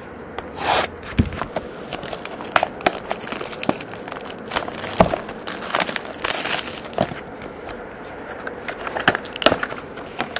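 Plastic shrink wrap being torn and crinkled off a sealed trading-card box, then the cardboard box being opened: an irregular run of sharp crackles and short rustles.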